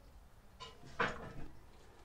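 Quiet handling of wiring behind a van dashboard: faint rustles, with a short soft knock about a second in.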